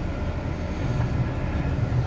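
Interior running noise of a KiHa 183 series diesel express train under way: a steady low rumble of the underfloor engines and the wheels on the rails.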